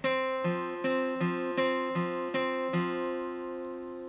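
Acoustic guitar with a capo, single strings plucked one after another in the song's intro riff, alternating between the G and D strings with the G string fretted at the second fret. About two and a half notes a second, each ringing over the next; the last pluck comes about three seconds in and its notes ring on.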